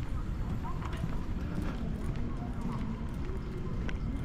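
Footsteps on pavement, with faint voices of passers-by and a steady urban hum.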